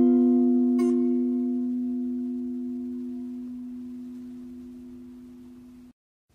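An acoustic guitar's final chord ringing out and slowly dying away, fading into silence just before the end.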